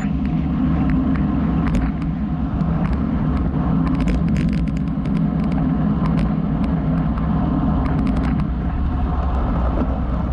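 Heavy wind rumble on a bike-mounted camera's microphone on a road bike coasting downhill at over 30 mph, mixed with tyre noise on the asphalt. Scattered faint clicks sound over it.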